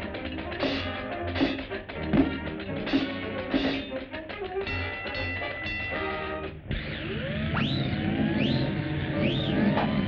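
Orchestral cartoon score playing short staccato notes. About two-thirds of the way in it breaks off into a rushing wind effect with rising whistling swoops, the cartoon's sound for an approaching tornado.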